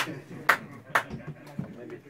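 Three sharp hits about half a second apart, each ringing briefly, over murmured voices.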